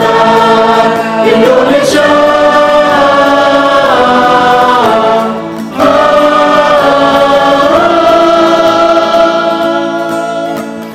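Mixed vocal group of men and women singing long held notes in close harmony, the chord shifting every few seconds, with a short break about halfway through.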